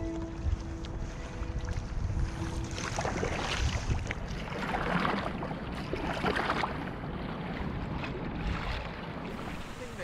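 Wind rumbling on an action-camera microphone aboard a moving sea kayak, with water sloshing and splashing from paddle strokes about every second and a half. Background music fades out about three seconds in.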